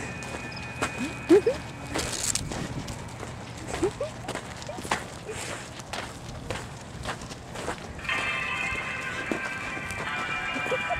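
Scattered footsteps on dirt with faint voices, then music comes in about eight seconds in, holding a steady chord.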